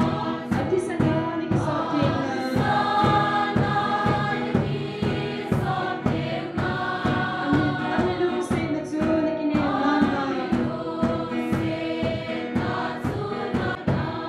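Choir singing a hymn over a steady drum beat.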